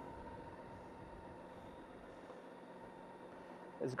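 Faint, steady running of the BMW K1600GT's six-cylinder engine at low revs, with no revving.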